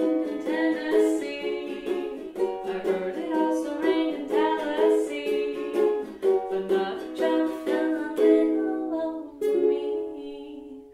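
Ukulele strummed steadily as song accompaniment, in a small room.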